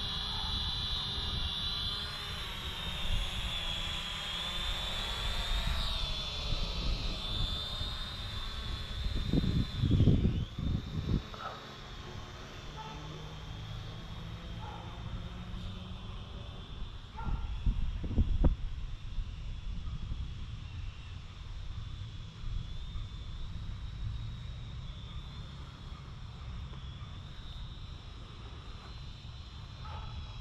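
Syma X500 quadcopter's propellers whining in flight on a waypoint route, a steady high whine that grows fainter after about six seconds. Wind buffets the microphone in low rumbles about ten and eighteen seconds in.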